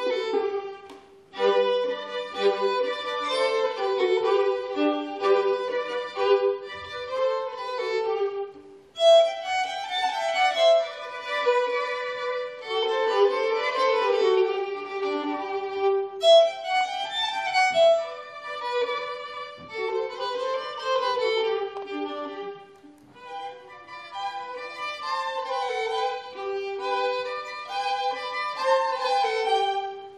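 Two violins playing a duet live, a melody in phrases with brief breaks between them.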